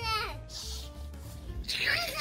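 A young child's high-pitched wordless vocalizing: a drawn-out call that falls away just after the start and comes back livelier near the end, with a faint rubbing noise in between.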